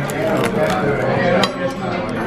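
Knife and fork cutting through the crisp crackling skin of a roast pork knuckle: a few sharp crunches and clicks of cutlery against the plate, under background voices.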